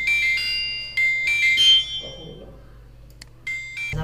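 A short electronic chime melody of high, clear beeping notes stepping up and down, like a phone ringtone, for about two seconds, then a brief repeat of its opening notes near the end.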